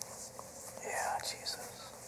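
A man whispering briefly under his breath for about a second, a quiet murmured prayer, over a faint steady hum.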